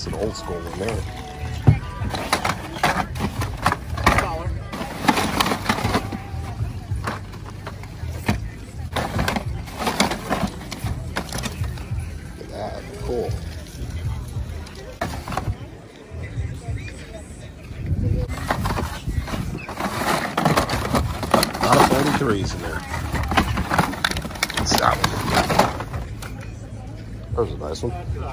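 Plastic blister-carded diecast cars crinkling and clattering against each other and a plastic tote bin as they are rummaged through and picked up, in repeated rustling bursts, with voices and music in the background.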